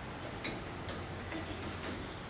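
Chalk writing on a blackboard: a few faint, light, irregular ticks as the chalk taps and strokes across the board.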